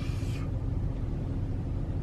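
Steady low rumble of a large SUV's engine and running gear heard from inside the cabin, with a brief hiss in the first half second.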